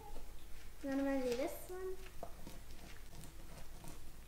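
A child's short voiced sound, about a second in, is the loudest thing. Around it, the faint crunching and crackling of a pizza cutter's wheel being pressed and rolled through a sheet of rice cereal treat on parchment paper.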